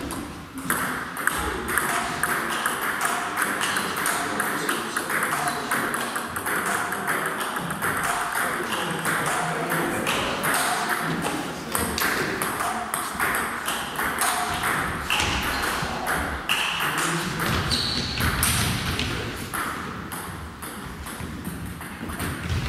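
Table tennis balls clicking off bats and bouncing on tables in rallies: a long run of sharp, quick ticks.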